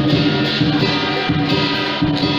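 Music with a steady, rhythmic beat and sustained pitched tones.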